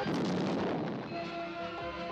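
A jet crash explosion on a TV soundtrack, its rumble dying away over about a second, with dramatic music playing through it.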